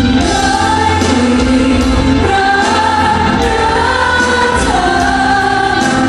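Live pop music: singers holding long notes over a band backing, played loud through a concert PA.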